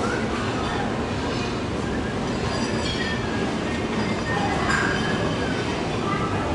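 Steady din of a busy buffet dining room: a constant rumble of room noise with faint distant voices.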